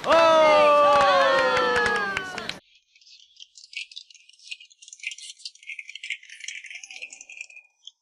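Several voices cheering in one long, drawn-out cry that falls in pitch, cut off suddenly a little over two seconds in. After it, only faint scattered clicking and rattling.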